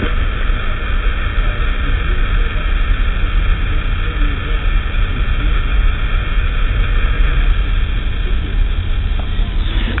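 Steady rumbling hiss from a handheld video camera's own workings, picked up by its microphone. These are the sounds the camera makes when it is held close to its subject.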